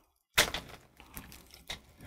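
After a brief dead gap, one sharp plastic click about half a second in, then a few fainter clicks and light handling noise, as small packaging pieces are pulled off a coiled IV tubing set.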